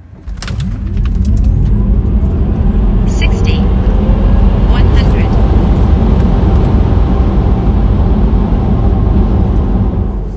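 Tesla Model 3 Performance dual-motor electric car accelerating flat out from a standstill on a timed launch, heard from inside the cabin. Road and tyre rumble with wind noise build within the first second and stay loud and steady, with a faint whine rising in pitch over the first couple of seconds.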